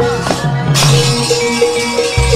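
Javanese gamelan playing accompaniment for a wayang kulit shadow-puppet play: repeated short metallophone notes over a low sustained tone, with a metallic rattling clatter coming in a little under a second in.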